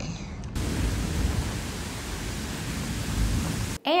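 Wind rushing through the leaves of trees, with gusts buffeting the microphone as a low rumble that swells twice. It starts about half a second in and cuts off just before the end.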